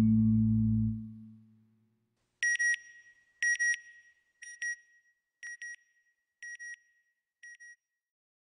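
A sustained music chord fades out, then a high electronic beep sounds in pairs, once a second for six pairs, each pair fainter than the last, as an end-logo sound effect.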